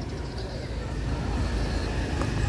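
Small motorcycle engine of a tuk-tuk (a motorbike pulling a passenger trailer) running as it approaches, a low rumble growing slowly louder.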